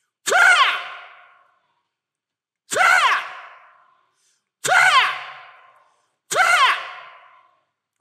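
A man's voice on a microphone giving four short, forceful breathy cries, each falling in pitch and ringing out in the hall's echo before the next.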